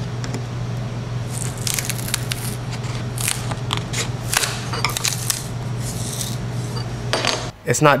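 A small metal tool scraping, scratching and clicking along a CNC-routed groove in a plastic-like sheet, prying at a bezel that the router did not cut all the way through, over a steady low hum.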